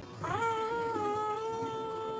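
A child's long, drawn-out "uhhhhh" held at one steady pitch: a hesitation sound while thinking of the answer to a question.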